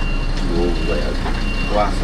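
Bus reversing alarm beeping, a single high tone sounding about once a second, over the low steady running of the Mercedes-Benz O-500M bus's diesel engine as the bus backs out of its bay.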